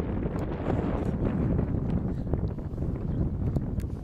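Wind buffeting the camera microphone: a steady low rumble, with a few faint short knocks in the background.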